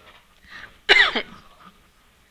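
A woman clears her throat with one short, pitched cough about a second in.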